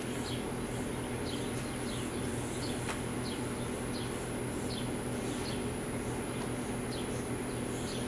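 Summer outdoor ambience: a steady high insect drone, with short falling bird-like chirps repeating roughly every second, over a low steady hum. One faint click about three seconds in.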